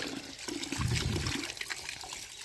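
A stream of water pouring steadily into a plastic basket and splashing over the hand and toys being rinsed under it.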